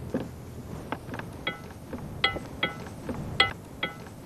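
A metal utensil striking a metal cooking pot, about six sharp clinks that each ring briefly, as hot boiled potatoes are worked into a purée.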